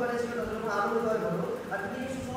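Only speech: a person talking without a break.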